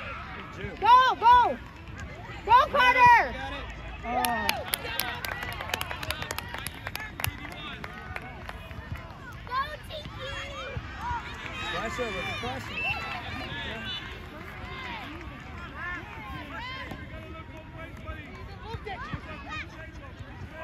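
Sideline spectators' voices: two loud shouts about a second and three seconds in, then overlapping calls and chatter. A quick run of sharp claps comes around five to seven seconds in.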